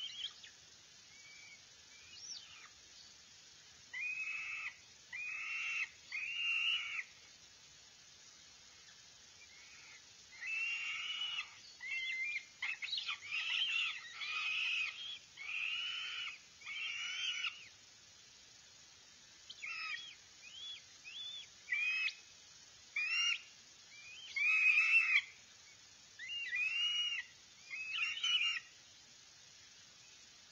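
Northern goshawk nestlings begging: repeated high calls, each about half a second to a second long, in runs of several with short pauses between. The calls grow louder and closer together through the second half.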